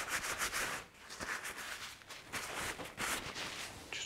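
Gentle smudging strokes rubbing across wet oil paint on a painting board: a quick run of short, soft scratchy rubs, with a brief pause about a second in.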